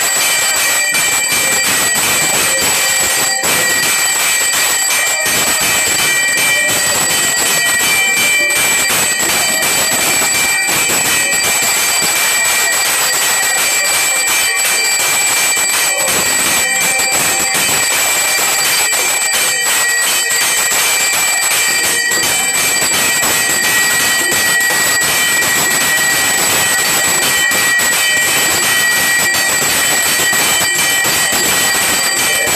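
Many metal temple bells and gongs struck rapidly and continuously for aarti, a loud unbroken clangour with steady high ringing tones over it.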